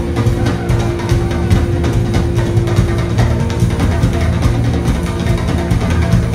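Live funk band playing an instrumental passage with drum kit, keyboards and guitar over a steady beat and heavy bass. A held note drops out about halfway through. Recorded on an iPad from the crowd.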